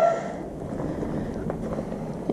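The tail of a short laugh, then a steady, even rush of outdoor background noise with no distinct events.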